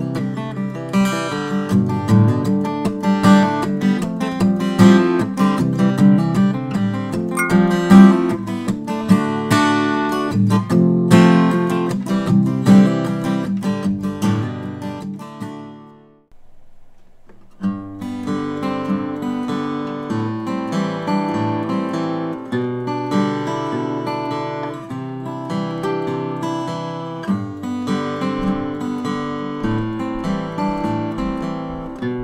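Takamine TSF48C steel-string acoustic guitar playing a picked chord-melody pattern. The first passage fades out a little past halfway, and after a pause of about a second and a half a new pattern starts, with bass notes on the downstrokes and the melody on the upstrokes through G, Am7 and G6/B.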